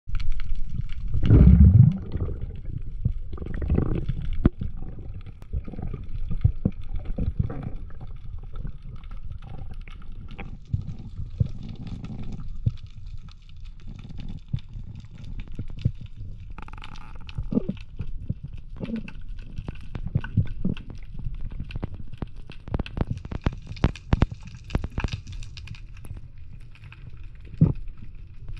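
Underwater noise picked up by a diver's camera: a steady low rumble of moving water with many scattered short clicks, and louder surges of water noise about a second and a half in and again near four seconds.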